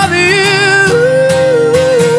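Live pop-rock song: a man's voice sings a long, wavering held note without clear words, from about a second in, over acoustic guitar accompaniment.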